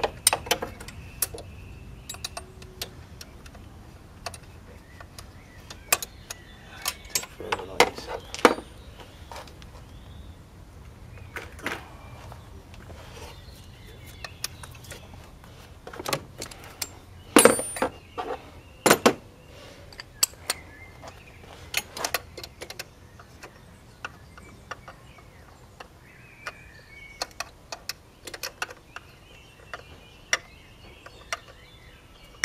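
Metal hand tools (spanners and a socket ratchet) clinking and knocking as they are handled and set down in a car's engine bay: scattered sharp clicks with a few louder knocks in the middle.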